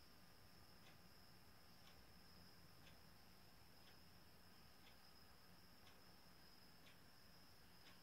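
Near silence: room tone with a faint steady high whine and a faint tick about once a second.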